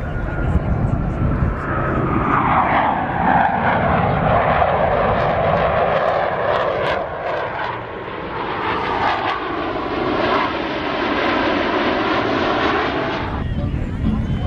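Jet roar of the Blue Angels' F/A-18 Hornets flying past in formation, with a whine that falls in pitch over the first few seconds. The roar swells and holds, then cuts off suddenly near the end.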